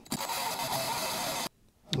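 Cordless drill spinning a 1 7/8-inch hole saw in forward, its pilot bit and teeth cutting into the plastic lid of a litter jug. It runs steadily and stops abruptly about a second and a half in.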